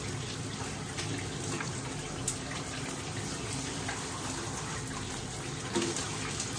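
Shower running: a steady spray of water.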